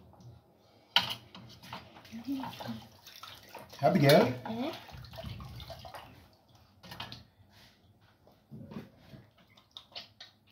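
A metal knife scrapes and clinks against a ceramic plate as food is served, with a sharp clink about a second in and a few lighter ones later. A short voice sounds about four seconds in.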